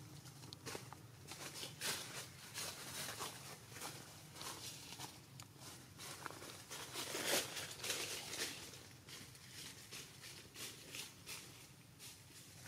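Irregular rustling and snapping of leaves and twigs, with a denser, louder stretch about seven seconds in.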